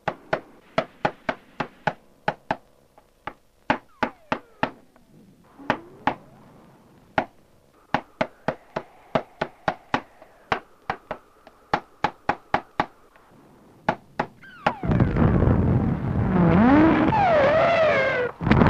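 A long series of sharp knocks, two or three a second with a few short pauses. About fifteen seconds in, a loud rushing din with whistling glides breaks in and drowns them out.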